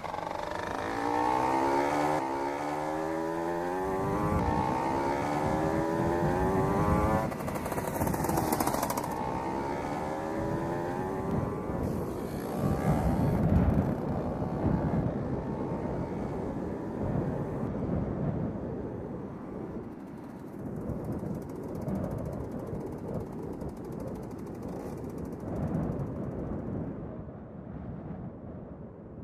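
Small motorcycle engine pulling away, its pitch rising over the first few seconds as it accelerates, then running on and growing fainter as the bike rides off.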